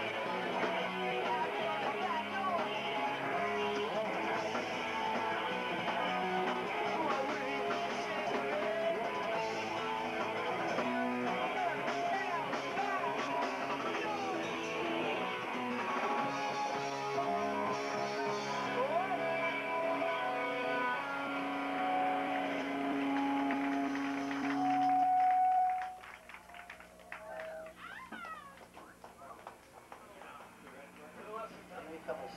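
Hardcore punk band playing live, guitar, bass and drums through a small club's PA, heard from within the crowd. The song ends on a held chord that cuts off suddenly about 26 seconds in, leaving quieter crowd voices and room noise.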